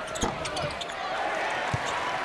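A basketball dribbled on a hardwood court: a few low bounces over steady arena crowd noise.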